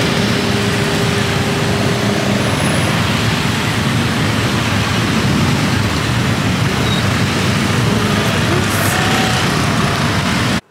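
Traffic and wind noise from the back of a moving motor scooter in dense scooter traffic: a loud, steady rush with engine sound mixed in. A steady engine hum stands out for the first couple of seconds.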